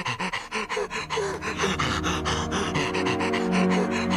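A man panting rapidly and heavily, about six or seven breaths a second. Under it, tense music with held notes swells in from about a second in.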